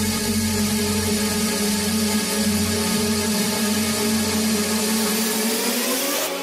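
Dark mid-tempo electronic music: a dense, hissing wall of distorted synth noise over held low synth notes and a pulsing bass, with a rising sweep near the end.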